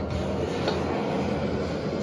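Steady rushing roar of a lit gas wok burner, running evenly with no breaks.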